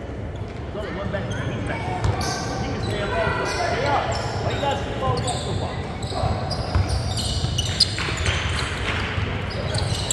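Basketball game in a large gym: the ball bouncing on the hardwood court and sneakers squeaking as players run, over spectators' chatter.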